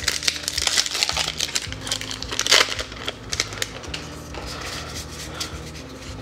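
Magic: The Gathering booster pack's foil wrapper crinkling and crackling as it is pulled open and handled, loudest about two and a half seconds in. After about three and a half seconds it gives way to softer handling of the cards.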